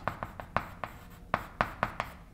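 Chalk writing on a blackboard: a quick, irregular series of sharp taps and short scrapes as letters are chalked in.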